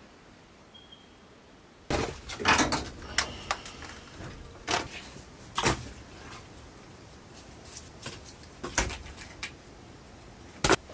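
Dry sticks of firewood knocking and clattering together as they are handled. A string of sharp wooden knocks starts about two seconds in, with a few louder strikes spread through the rest.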